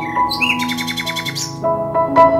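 Gentle ambient background music with long held notes, with bird chirps over it: a short call near the start, then a rapid trill of about a dozen notes a second through the middle.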